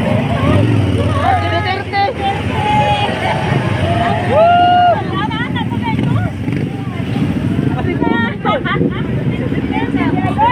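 Many people shouting and calling out over the low rumble of motorcycle engines, with one long drawn-out call about four seconds in.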